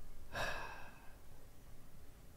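A man's short, breathy sigh close to the microphone, about half a second long, shortly after the start; after it only faint room noise.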